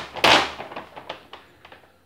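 Brown kraft-paper bag rustling and crackling as it is pulled open by hand, with one loud crackle about a quarter second in, then a few lighter crinkles that fade out.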